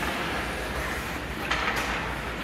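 Hockey skate blades scraping and carving on the ice of an indoor rink, a steady rough hiss, with a short sharp burst of noise about one and a half seconds in.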